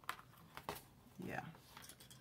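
A few light clicks of a discbound planner's plastic binding discs and cover being handled as the discs are fitted into the cover's edge.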